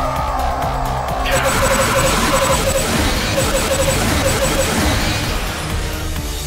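Loud action-film soundtrack: music layered with sci-fi sound effects. A falling tone opens it, a dense burst of noise comes in about a second in, and a rapid pulsing beep runs through the middle.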